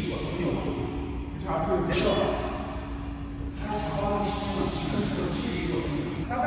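A man speaking Korean in a large, echoing indoor hall, with one sharp crack about two seconds in.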